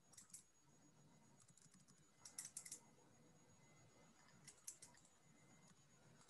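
Faint computer keyboard typing: a few short runs of keystrokes over near-silent room tone.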